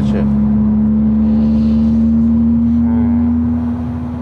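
Volkswagen Golf GTI's turbocharged four-cylinder engine heard from inside the cabin, pulling steadily under load with a drone whose pitch rises slowly as the car gains speed.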